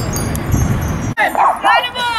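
A small dog yapping in a quick run of short, high yips and whines. They start abruptly about halfway in, after a steady low background noise.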